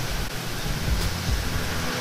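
Steady background noise: an even hiss with an uneven low rumble underneath, with no distinct event.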